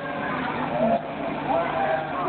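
Several people's voices at once, overlapping, over a steady background noise.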